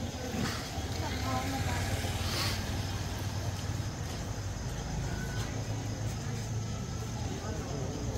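Street ambience: a steady low rumble of motor traffic, with scattered voices of passers-by and a brief noisy swell about two and a half seconds in.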